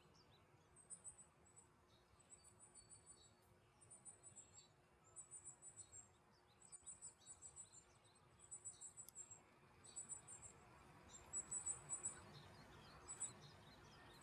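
Faint outdoor ambience of insects calling: short, high-pitched pulsed bursts repeating about once a second, with a few fainter chirps and a low steady background hum.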